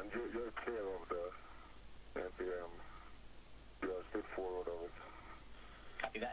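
Speech over the spacewalk radio loop: three short spoken phrases, thin and narrow-sounding as over a radio link, with a steady hiss beneath.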